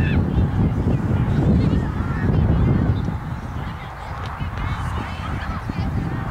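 Outdoor field ambience: a dense low rumble, typical of wind on the microphone, that eases about halfway through, with faint short calls in the distance.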